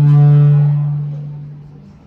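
A steady low hum with overtones, holding one pitch, swelling up early on and fading away near the end.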